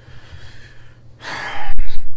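A man's loud breath close to the microphone: a noisy rush of air starts a little over a second in and is loudest near the end, with a dull low thump just before it ends.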